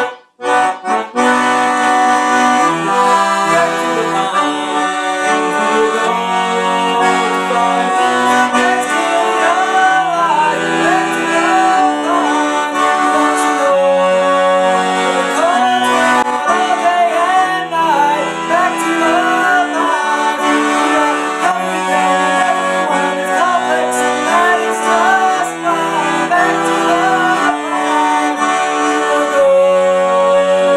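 Monterey piano accordion playing a folk tune in held chords over a moving bass, after a brief break about half a second in. From about nine seconds in, a man's voice sings a wavering melody over it without clear words.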